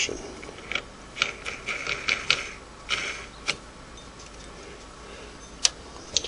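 Light, irregular metal clicks and taps as the stop-motion washer and clamp nut are fitted by hand onto a Singer 301A sewing machine's hand wheel, with one sharper click near the end.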